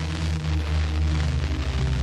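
Hiss and a steady low hum from an off-air FM pirate radio recording, with faint low music notes underneath.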